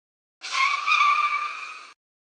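Tyres screeching: a sudden squealing skid that starts about half a second in, fades away and cuts off just before the end.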